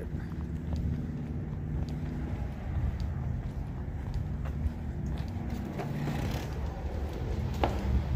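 Footsteps of a person walking across asphalt, faint regular steps over a steady low rumble, with a sharper knock near the end.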